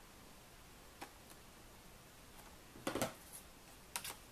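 Handling sounds of cardstock, a metal die and scissors on a craft mat: a faint tap about a second in, a louder rustle and clatter just before three seconds, and a sharp click near the end as the scissors come to the card's corner.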